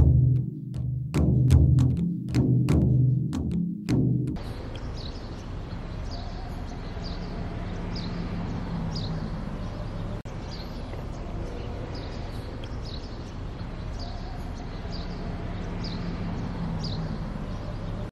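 Marching band bass drum and snare drums beating a steady, loud rhythm of strokes for about the first four seconds. Then the drums cut off and give way to quieter, steady background music with a soft regular tick.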